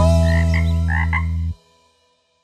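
Cartoon frog croak sound effect: a deep, buzzing croak held for about a second and a half with a few short higher chirps over it, cutting off suddenly.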